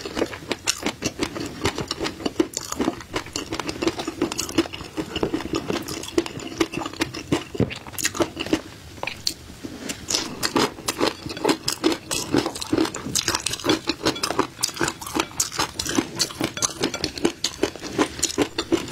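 Close-miked chewing of flying fish roe (tobiko): a dense, irregular stream of small crisp pops and clicks as the eggs burst between the teeth.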